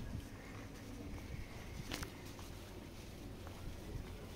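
Quiet outdoor background with a low rumble and the light, irregular steps of someone walking, with one sharp click about two seconds in.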